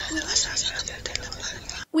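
Whispering voices, with a hushed hiss and faint voice contours, cutting off suddenly near the end.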